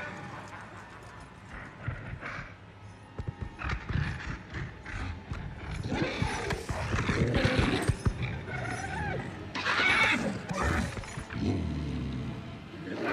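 A warg, a huge wolf-like beast, growling and snarling as its chain rattles and clinks. The rattling clicks come first, then the growls grow louder about halfway through, loudest near the end.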